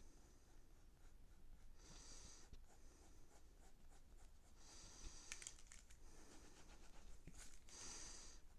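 Quiet pencil sketching on paper, faint strokes and scratches, with a soft hiss about every three seconds.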